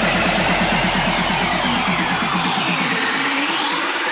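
Bigroom EDM track in a build-up: rapid repeated notes under a rising and falling noise sweep, with the bass cut out about two and a half seconds in.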